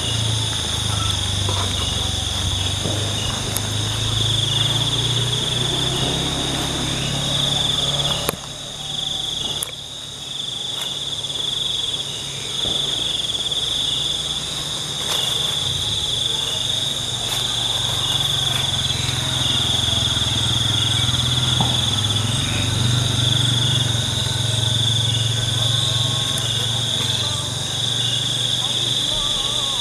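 A night chorus of crickets and other insects, a steady high pulsing trill all the way through. Underneath it is a low steady hum that drops away about eight seconds in and comes back later.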